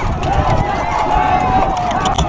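Horse galloping with irregular hoofbeats under a loud, rough wind rush on the rider's microphone. A single long held vocal note, like a drawn-out shout, runs over it.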